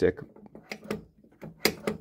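Several short, sharp clicks from a pinball machine's flipper mechanism as the flipper is worked, with the loudest pair near the end. The flipper is still sticking a little rather than settling all the way back at rest, even with a new coil sleeve and a cleaned coil.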